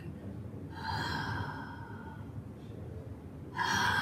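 A woman's voice making long, drawn-out, heavy breaths, acting out the creepy carrots' breathing. There are two of them: one about a second in, and a louder one starting near the end.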